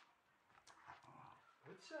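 Faint, short vocal sounds from a dog, with a man's brief word near the end.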